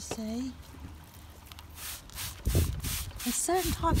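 Hand trigger spray bottle squirting onto plant leaves, a quick run of short hissing sprays about three or four a second starting about two seconds in, with a low rumble underneath.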